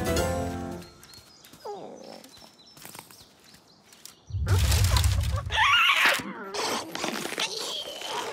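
Cartoon soundtrack: the last notes of a title music cue end about a second in, followed by a quiet stretch with small soft effects and a short wavering squawk from the cartoon ostrich. About four seconds in comes a loud, low rumble, then the ostrich's panicked, warbling squawks as a crocodile's jaws open under it.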